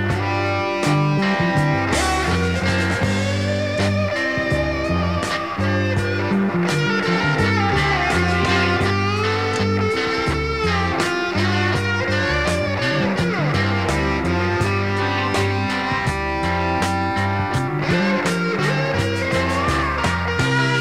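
Instrumental break of a 1968 psychedelic blues-rock recording: an electric guitar lead with bending notes over a moving bass line and drums, no vocals.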